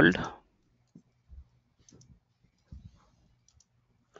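A few faint computer keyboard keystrokes, scattered and irregular, as a short phrase is typed.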